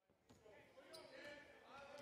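Faint basketball-arena sound: a low crowd murmur and a basketball bouncing on the hardwood court, with a sharp tick about a second in.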